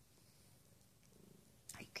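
A domestic cat purring faintly and steadily.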